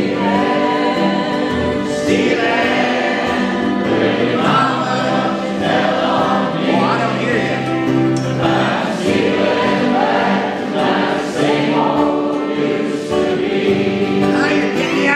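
An audience and band singing a jug band song together over strummed acoustic guitars and fiddle.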